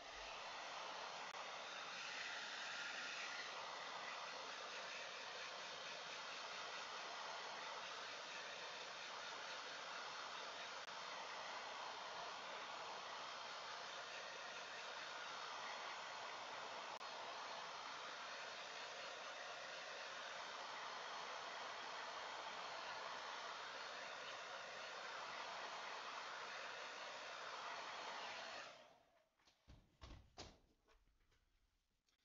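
Handheld hair dryer blowing steadily over a wet watercolour painting to dry the paint, its tone wavering slightly as it is moved about, then switched off shortly before the end.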